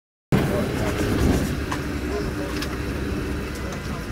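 A steady low vehicle rumble with indistinct voices, starting abruptly a moment in after silence.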